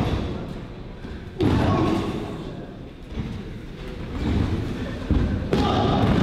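Heavy thuds of wrestlers' bodies hitting the wrestling ring's canvas, each impact ringing briefly through the ring. One comes about one and a half seconds in and two more close together near the end.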